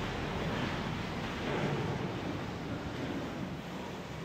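A steady rushing noise, like wind or surf, slowly fading.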